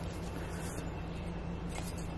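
Quiet, steady background noise with a faint low hum and no distinct event, apart from one faint tick near the end.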